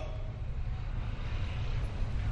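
Steady low rumble with a faint even hiss: background noise through the microphones.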